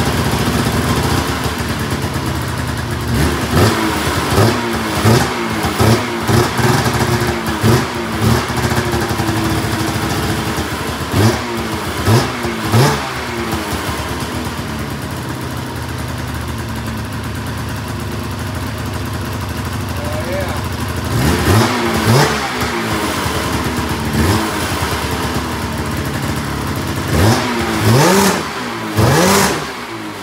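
1998 Polaris Indy XC 700 snowmobile's two-stroke triple engine running, with freshly cleaned carburetors and new spark plugs. It idles between many quick throttle blips, each a short rise and fall in pitch, coming in a dense run in the first half and again in the last third.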